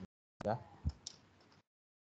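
A single soft tap, likely a stylus on a tablet screen, a little under a second in, after a brief spoken "ya"; the sound then cuts to dead silence.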